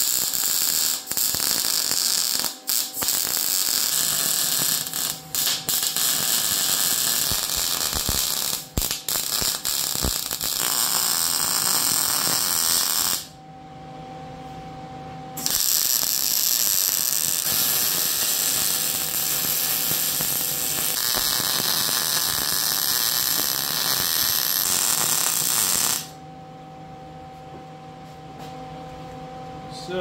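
Wire-feed welding arc crackling steadily as beads are laid on steel frame rails: one run of about 13 seconds, a pause of about two seconds, then a second run of about ten seconds. A quieter steady hum is left after the welding stops near the end.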